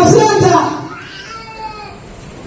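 A man's raised, drawn-out voice through a public-address microphone, loud in the first half-second and then trailing off into a fainter held tone.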